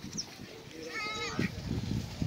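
A single short, wavering, high-pitched animal call, about half a second long, a little after a second in, over low outdoor background noise.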